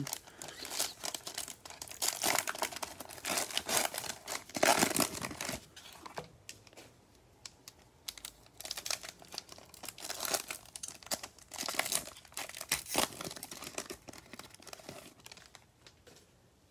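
Plastic cello-pack wrapper of basketball trading cards crinkling and being torn open, with crackly rustling for the first several seconds, loudest around five seconds in. After that come softer, scattered rustles as the cards are slid out and handled.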